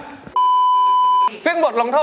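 An edited-in bleep: one steady, loud electronic tone lasting just under a second, switching on and off abruptly, with a man's speech just before and after it.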